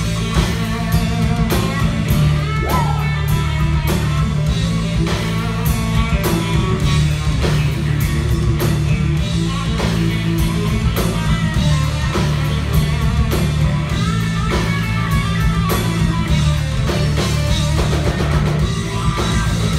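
Live rock band playing an instrumental stretch with no vocals: electric guitar lead with bent notes over bass guitar and a drum kit keeping a steady beat.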